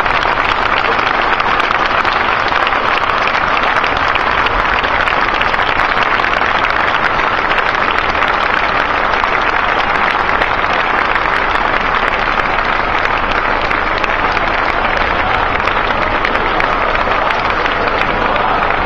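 A large crowd applauding, a long steady round of clapping at the close of a speech.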